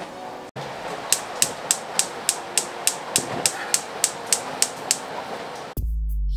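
Gas stove's electronic igniter clicking about three times a second over a steady hiss of gas. A loud low beat of background music cuts in near the end.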